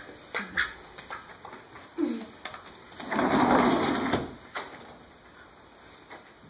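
Footsteps and scuffling on a tile floor with a few short calls, then a sliding glass patio door rolling along its track for just over a second, about three seconds in.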